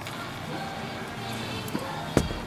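Indoor shop ambience: background music playing, with people talking indistinctly.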